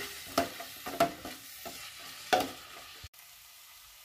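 Plastic slotted spatula stirring vegetables in an aluminium pot, with three sharper scrapes and knocks against the pot over a soft frying sizzle. The sound drops away suddenly about three seconds in.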